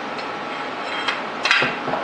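Metal parts of a dividing head (steel shaft, brass gear, aluminium frame) knocking and clinking as they are handled on a workbench, with one sharp clink about one and a half seconds in.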